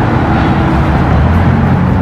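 Steady low rumbling noise, with a faint steady hum in the first second.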